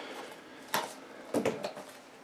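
Quiet snips and clicks of a child's plastic scissors cutting the seal on a small cardboard blind box, with the box being handled: one sharp click about a third of the way in and a few smaller ones just past halfway.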